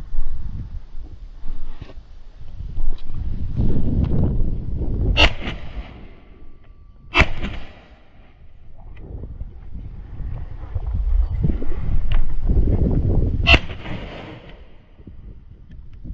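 Three sharp shotgun shots, about five, seven and thirteen and a half seconds in, the later two trailing off briefly. Between them is the rustle and crunch of walking through low scrub and loose stones.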